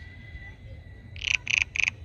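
An animal calling: a run of four short, loud, pitched notes, about three a second, starting a little over a second in.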